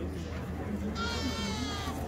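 Background crowd talk, with a short high-pitched cry about a second in that lasts just under a second and falls slightly in pitch.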